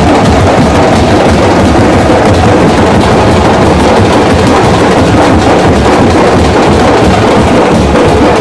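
A group of steel-shelled drums beaten with sticks, playing a loud, dense, continuous rhythm without a break.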